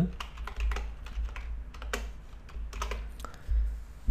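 Computer keyboard typing: a few scattered, irregular keystrokes as a short value is typed into a line of code.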